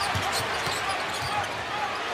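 Basketball being dribbled on a hardwood arena court, low bounces repeating over the steady noise of a large arena crowd.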